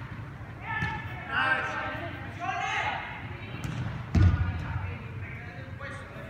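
Players' shouted calls echoing around an indoor turf hall, with a loud thud of a soccer ball being struck about four seconds in.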